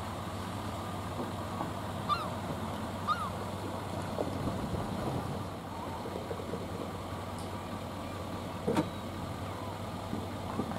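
Pickup truck engine running steadily as it backs a boat trailer down a launch ramp, with a few short bird calls about two and three seconds in and a sharp click near the end.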